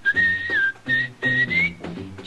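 A whistled melody, a single clear line that holds a few notes and glides up near the end, over a light instrumental accompaniment.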